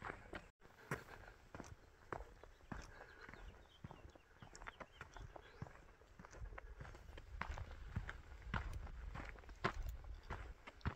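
Footsteps of one person walking on a dry dirt and gravel track, a faint crunch at a steady walking pace.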